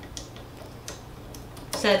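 A few faint plastic clicks from the blade clamp on a Cricut Maker's cutting carriage as the cutting blade is handled in and out.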